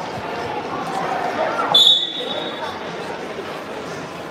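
A single high-pitched signal tone, just under a second long, sounds about two seconds in, marking the end of the first wrestling period, over steady crowd chatter in a large gym hall.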